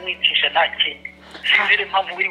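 Speech only: a phone conversation, with a short pause about a second in, over a steady low hum.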